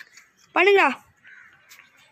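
A crow cawing once, a single arched call about half a second in, followed by faint background noise.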